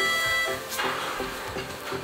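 Bright electronic dance background music with a steady beat. A ringing tone dies away in the first half second, and a short whoosh follows a little under a second in.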